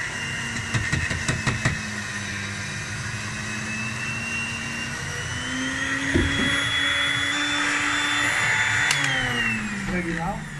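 Electric blender motor running with a steady whine, held down with a small grinder cup fitted. It speeds up about halfway through and winds down near the end. A few knocks sound in the first two seconds.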